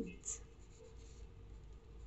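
Faint scratching of a graphite pencil moving over a paper worksheet.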